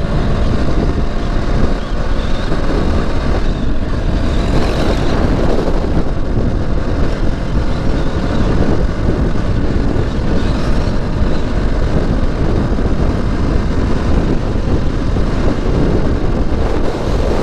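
Motorcycle ridden at speed on an open road: a loud, steady rush of wind buffeting the microphone over the running engine.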